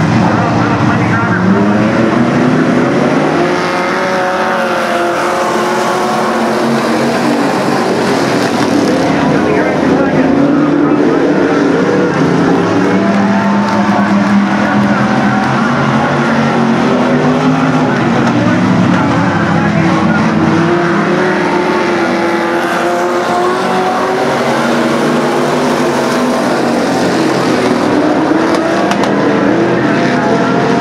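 A pack of UMP street stock race cars with V8 engines racing together. Several engines sound at once, their pitch rising and falling continuously as the cars accelerate and lift through the turns.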